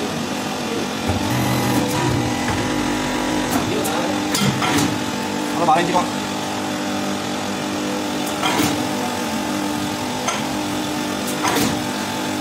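Press machine's motor humming steadily, with several short sharp metal knocks as the metal bowl and die parts are handled.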